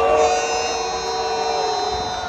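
Marching band holding a long sustained chord for about two seconds, cutting off right after, over the murmur of a stadium crowd.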